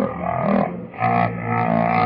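A cartoon character singing a list of countries with band accompaniment, the voice electronically altered to a low, distorted pitch. The sound is muffled and low-fidelity, with its treble cut off.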